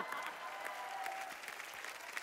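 Audience applauding, a dense patter of hand claps that slowly fades.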